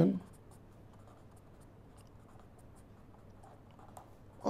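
Pen writing on paper: a run of faint, short scratching strokes as a word is lettered in capitals.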